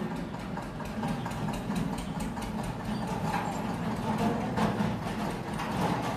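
Marker scratching on a whiteboard as a short line of words is written, over a steady low mechanical hum.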